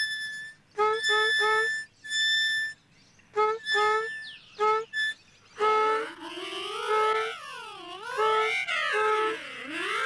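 Harmonica music: short separate notes with gaps between them, then from about halfway a continuous line joins in, its pitch swooping down and back up several times under steady repeated notes.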